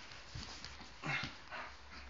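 Wolfdogs play-wrestling, with a few short whining vocal sounds from the dogs; the loudest comes about a second in.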